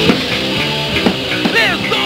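Live rock band playing an instrumental stretch of the song, with electric guitar and drums. Near the end, notes slide downward in pitch.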